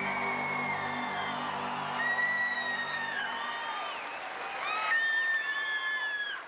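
The orchestra's last held chord dies away while a large audience applauds and cheers. Shrill whistles ring out over the cheering from about two seconds in, loudest near the end.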